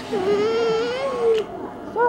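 A polar bear cub giving one long whining cry lasting a little over a second, rising and falling slightly in pitch, ending with a short click.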